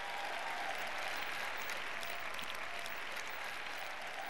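Large arena audience applauding steadily.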